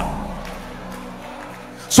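Soft sustained background music chord with steady low notes, heard in a pause as the preacher's voice dies away in the hall; speech starts again at the very end.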